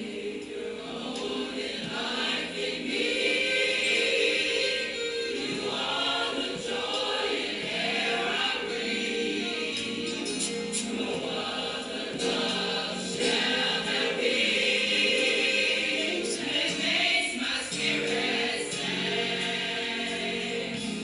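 Choir singing gospel music, coming in suddenly at the start and continuing steadily.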